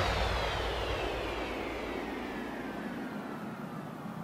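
Electronic downward-sweep sound effect dying away: a hissing whoosh whose pitch falls steadily while it fades, the decaying tail of the preceding music.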